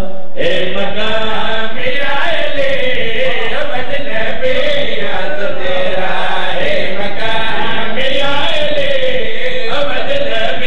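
A man chanting devotional Urdu verse in a melodic, sung recitation through a loud public-address system, with long held, gliding notes. There is a brief break just after the start.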